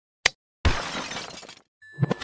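Intro sound effect: a single sharp click, then about half a second later a loud crash-like burst of noise that fades away over about a second. A faint high tone starts near the end.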